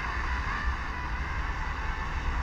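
Steady static hiss from a mobile phone's FM radio through its small speaker, tuned to 93.3 MHz with no clear station coming through, over a low rumble.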